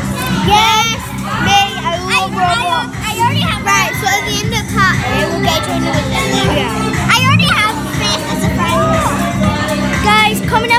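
Several children talking and squealing over each other, with background music playing steadily underneath.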